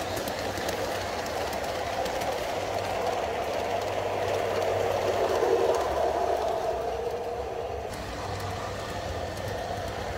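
Model electric train, a locomotive with coaches, running along the layout's track: a steady running noise of motor and wheels that swells as it passes close, loudest about five to six seconds in, then eases off.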